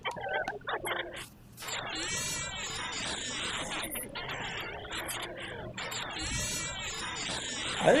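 A looping sound file played through an FFT spectral gate (Max/MSP pfft~) that lets only the loudest frequencies through. The result is a weird, bubbly, artifacty sound with frequencies popping in and out, the same phrase repeating about every four seconds.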